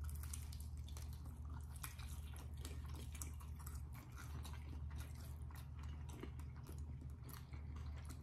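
Chewing and biting into grilled chicken, faint, with many small irregular wet mouth clicks over a steady low hum.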